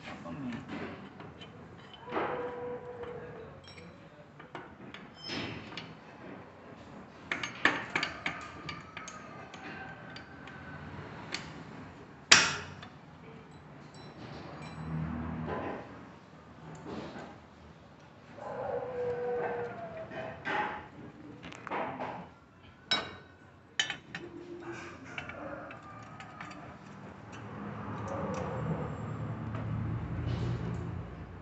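Intermittent metallic clinks and knocks of hand tools and a motorcycle exhaust header pipe being fitted back to the engine and its flange bolted up with a wrench. The sharpest knock comes about twelve seconds in.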